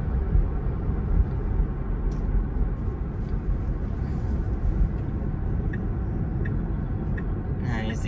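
Steady road and tyre noise heard inside the cabin of a Tesla electric car under way, a low rumble with no engine note, with a few faint clicks.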